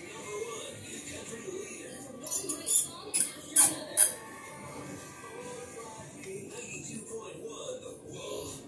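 A quick run of sharp clicks and clatters from about two to four seconds in, the loudest three in the last second of the run, from hands working cables and parts into a metal breaker panel. Under it, background music and voices play steadily.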